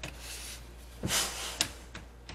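Plastic bottom case of an Acer Predator Helios 300 laptop being handled and fitted back onto the chassis: soft scraping and rustling, a short louder rush of noise about a second in, then a sharp click just after.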